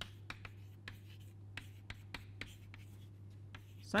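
Chalk writing on a chalkboard: a run of short taps and scratches as words and symbols are chalked, over a steady low hum.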